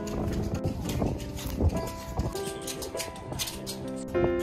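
Background music: held notes that change every second or so, with a scatter of short knocks through it.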